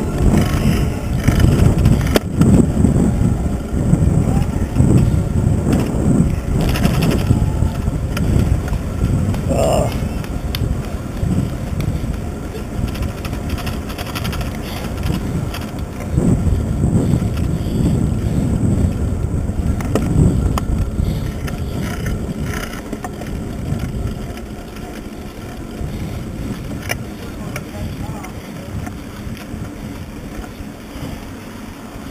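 Wind buffeting the microphone of a handlebar-mounted camera, with tyre and road rumble from a road bike riding in a pack of cyclists. It swells and eases in gusts and grows quieter toward the end.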